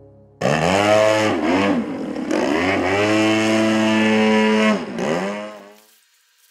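GP61 model-airplane engine running at high throttle, its pitch dipping and climbing back once about a second and a half in, then dipping again near the end as it fades out.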